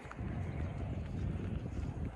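Wind buffeting the microphone outdoors, an irregular low rumble.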